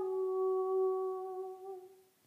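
A woman's unaccompanied voice holding one long note, steady in pitch, that fades away and stops just before the end.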